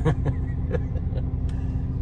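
Diesel truck engine idling: a steady low rumble with a constant hum, with a few light clicks over it.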